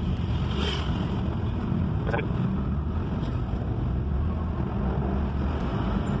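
Steady low rumble of a car's engine and road noise heard from inside the cabin while driving in traffic.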